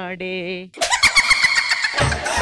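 A drawn-out, wavering vocal cry, cut off about a second in by a sudden loud, noisy burst carrying a high-pitched whine and rapid clicks.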